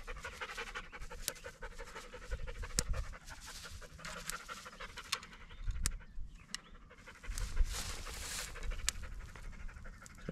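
A dog panting rapidly and steadily close by, with a few sharp ticks scattered through.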